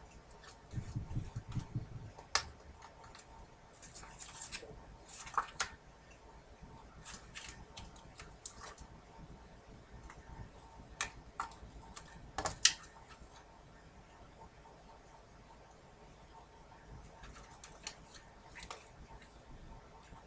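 Scattered light clicks, taps and rustles of a clear acrylic stamp block, clear stamps and their plastic sheet being handled on a cutting mat, with sharper clicks about two seconds in and near twelve and a half seconds.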